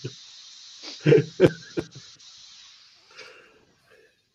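Steady hiss of a power-drill sanding disc against a wooden bowl spinning on a lathe, fading away about three and a half seconds in as the sander is lifted off. A man laughs loudly a little after a second in.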